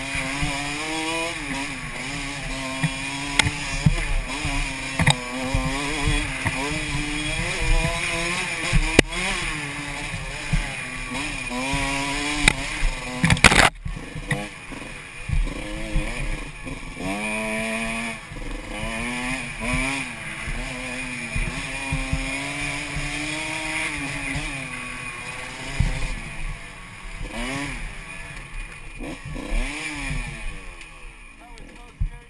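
Dirt bike engine revving up and down through the throttle on a rough trail, with knocks and rattles over the bumps and one loud clatter about fourteen seconds in. Near the end the engine pitch falls away as the bike slows.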